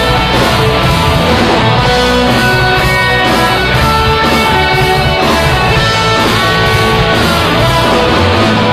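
Rock music played by a band, with guitar to the fore over a steady beat.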